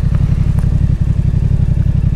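Yamaha XSR 700's 689 cc parallel-twin engine running at low revs as the motorcycle rolls slowly, a steady low engine note with even firing pulses.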